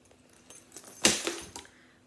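Metal chain-link handbag straps jangling, with a rustle, as a faux leather purse is lifted and set aside. The loudest jangle comes about a second in and fades within half a second.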